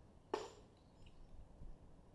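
Brass .45 ACP cases being handled: one sharp metallic click about a third of a second in, then faint fiddling sounds.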